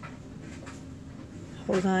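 A low, steady room hum with a couple of faint ticks, then near the end a woman's voice begins, saying "Hold on."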